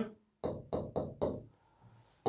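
A stylus tapping and knocking on the glass of an interactive whiteboard screen while writing. There are about four quiet taps in quick succession near the start.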